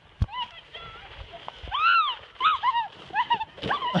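High-pitched squeals, each rising and falling in pitch, from people on a snowy sledding hill as a sledder goes down and crashes, with a sharp knock about a quarter second in and a shouted name near the end.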